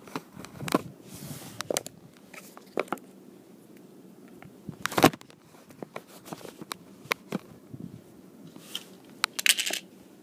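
Small objects being handled: scattered clicks and taps with short bursts of rustling, and one loud knock about five seconds in.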